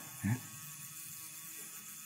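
A brief spoken "Yeah?" near the start, then a faint steady hum of room tone in a large hall.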